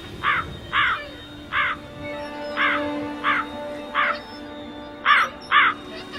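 Crows cawing about eight times in an uneven series over a low, sustained drone of film score music.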